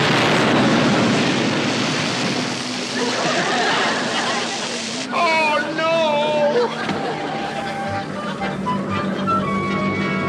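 Depth charge exploding in the water: a sudden blast followed by a rushing spray of water that dies away over about five seconds.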